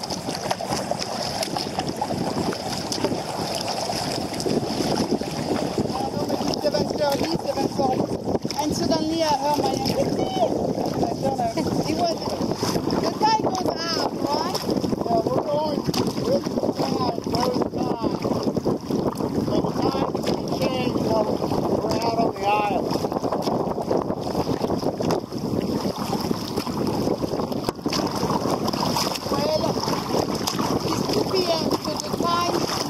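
Wind buffeting the microphone and choppy water washing against a kayak's hull as it is paddled, a steady rush throughout. Faint voices come and go through the middle.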